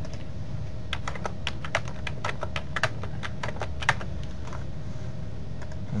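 Typing on a computer keyboard: a quick run of keystrokes starting about a second in and stopping about three seconds later, over a steady low hum.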